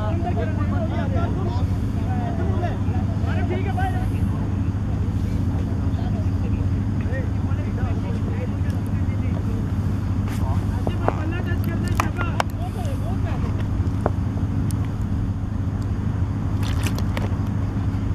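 A steady low hum, like an engine running, throughout, under faint distant voices in the first few seconds, with a few sharp clicks in the second half.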